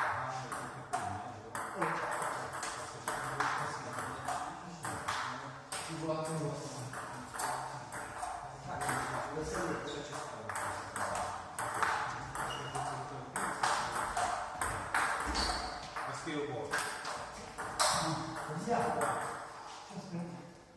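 Table tennis ball being hit back and forth with rubber-faced bats and bouncing on the table during rallies: a quick, irregular run of sharp clicks, with voices talking underneath.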